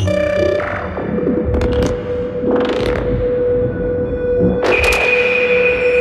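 Generative modular synthesizer patch. A steady tone sets in about half a second in and holds, with swelling noise sweeps and sharp clicks over a low pulsing. The low pulsing stops near the end, as a second, higher tone comes in.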